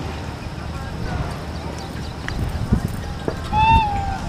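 Short, high-pitched horn blast from an approaching WAP-5 electric locomotive near the end, over steady station background rumble and low thumps.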